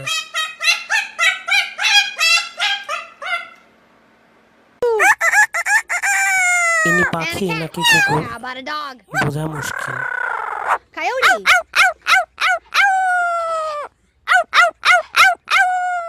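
Parrots calling in three quick stretches. First a white cockatoo gives a rapid run of repeated calls. After a short gap an amazon parrot makes loud calls and falling whoops into a handheld microphone, and near the end an African grey parrot gives a string of short calls.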